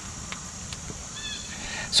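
Outdoor ambience: a steady high-pitched insect chirring, with a short faint bird chirp a little past halfway and a few light clicks.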